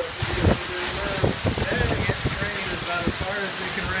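Heavy rain falling hard in a thunderstorm downpour, a dense steady hiss of rain, with a voice talking over it.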